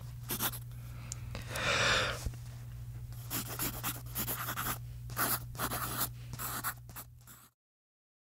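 Marker pen writing on a white surface: a string of short, irregular scratching strokes over a low steady hum. It cuts off suddenly near the end.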